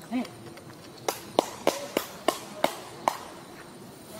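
A quick run of about seven sharp clicks or knocks over roughly two seconds, starting about a second in, some with a brief ringing tone after them; a short voice is heard at the very start.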